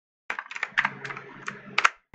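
Computer keyboard keystrokes: a quick, irregular run of clicking keys, the loudest just before the end, as code is pasted and edited.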